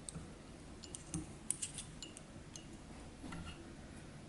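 A scatter of light clicks and ticks from small fly-tying tools being handled at the vise, bunched about a second and a half in, with a few more near the end.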